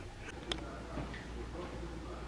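A few faint, light clicks and knocks in a quiet room, a sharp one about half a second in: a person moving about and handling things at a shelf.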